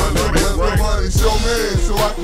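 Hip hop track: a rapper's voice over a beat with several deep bass drum hits that drop in pitch.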